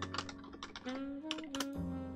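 Typing on a computer keyboard: an irregular run of quick key clicks, over soft background music with held notes.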